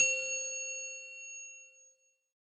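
A single bright bell-like ding, struck once and ringing out, fading away over about two seconds.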